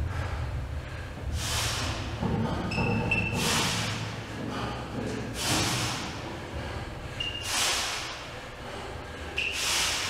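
A man breathing hard from the strain of a 500 kg sled pull: a loud, forceful breath about every two seconds.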